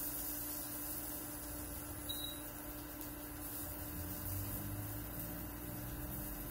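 Quiet, steady electrical hum of a running induction burner, heating a grill pan of sausages.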